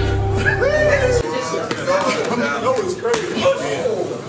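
Boxing gloves landing punches in sparring, a few sharp slaps. Men's voices and music with a deep bass run underneath; the bass cuts out about a second in.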